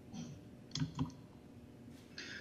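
Two or three faint clicks of a computer key or mouse button, a little under a second in and at about one second, as a presentation slide is advanced.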